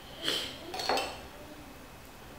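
Two light clinks of a small metal spoon, about half a second apart, each with a short high ring.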